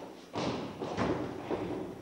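A few dull thumps and knocks on a wooden stage, three stronger ones about half a second apart, heard in a hall.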